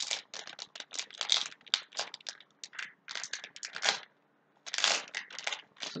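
Foil Yu-Gi-Oh booster pack wrapper crinkling in the hands, a run of quick sharp crackles with a short pause about four seconds in.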